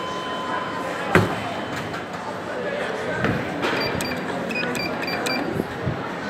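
A run of about seven short, high electronic beeps in quick succession, over the hubbub of voices in a public space, with a sharp knock about a second in.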